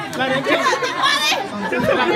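Several people talking over one another in lively chatter, with one voice rising higher and louder about a second in.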